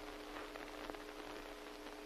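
Faint steady hiss with a constant low hum, the background noise of an old monaural TV soundtrack, with a few faint soft ticks.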